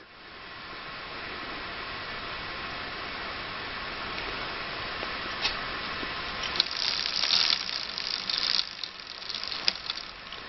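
Bicycle chain running through the jockey wheels of a Shimano Deore rear derailleur as the crank is turned, a steady whir that grows louder for about two seconds past the middle, with a few light clicks. The crank is being turned to test a stiff chain link that has just been worked side to side.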